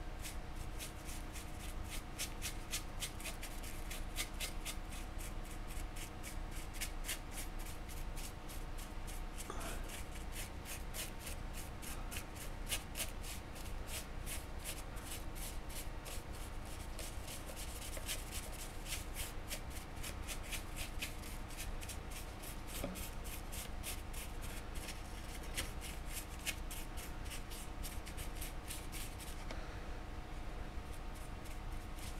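A paintbrush scrubbing and dabbing paint onto the textured base of a sculpted tree model, in rapid repeated strokes, several a second.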